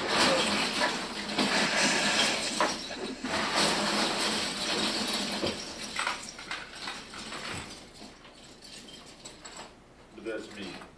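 Robot parts and tools being handled and rummaged through, a run of rattling, clicks and scraping that dies down over the last few seconds.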